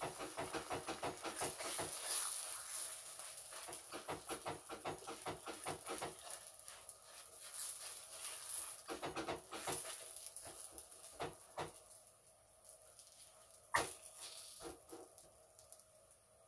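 Hands patting and pressing a folded square of fat-filled msemen dough flat on a hot greased cast-iron griddle: a quick run of soft pats, several a second, for about the first six seconds, then slower, scattered pats. One sharp knock near the end.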